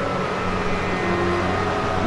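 Steady background hiss with a low, even hum and no sudden sounds.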